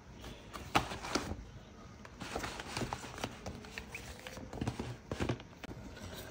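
Paper booklets, sheets and a paper bag being handled and shuffled: irregular rustles with soft taps and knocks.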